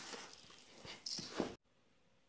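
Granola mixture of oats, coconut and cacao being stirred by hand in a stainless steel bowl: faint rustling, cutting off abruptly about one and a half seconds in.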